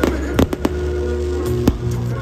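Aerial fireworks bursting, with several sharp bangs: a quick cluster about half a second in and another near the end, heard over background music.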